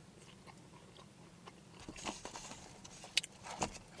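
Faint chewing of a mouthful of fries, with small wet mouth clicks and crunches, a little busier and louder in the second half.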